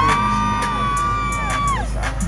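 Live hip-hop/R&B concert music over a loud arena PA with heavy bass. A single sung note is held for about a second and a half and falls away near the end, with the crowd audible beneath it.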